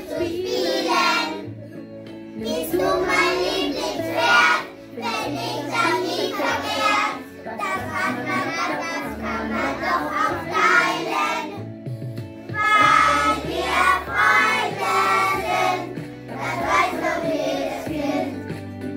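A group of children singing a song together with instrumental accompaniment that has a steady bass line, the singing pausing briefly between phrases.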